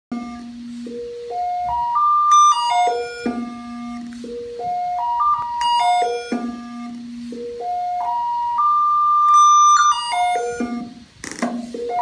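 A DIY sensor theremin: computer-generated tones set by the distance of a hand over an ultrasonic and infrared sensor. The notes step up and down a scale of set pitches rather than gliding, rising and falling in about three runs.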